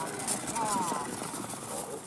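A man's voice calling out briefly about half a second in, over a steady rushing background noise.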